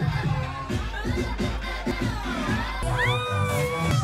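Loud club dance music with a heavy, steady bass, with a crowd shouting and cheering over it; about three seconds in a high voice sweeps upward.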